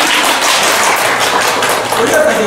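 Audience applauding, a dense patter of many hands clapping that starts up after a plucked-string performance and dies away at the end.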